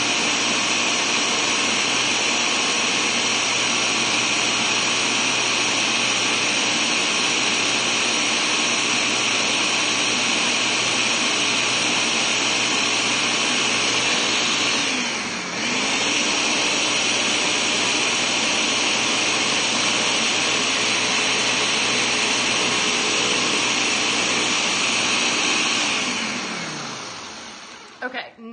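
Ninja Professional 1100-watt blender running on its highest speed, puréeing a thick carrot soup into a smooth bisque. Its motor pitch dips briefly about halfway through and picks back up, and near the end it is switched off and winds down.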